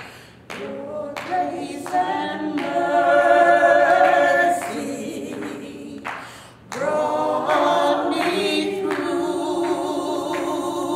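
Two women singing together without instrumental accompaniment, holding long notes, with a short break about two-thirds of the way through before they sing on.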